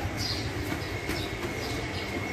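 Street ambience: an uneven low rumble, with a couple of short high bird chirps and a faint steady high tone over it.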